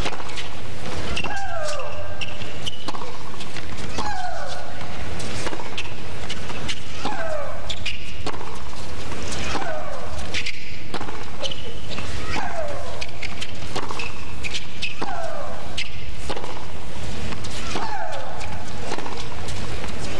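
A tennis player shrieking on each of her shots through a long baseline rally: a falling cry about every two and a half seconds. Between the cries come sharp pops of ball on racket and bounces on the court.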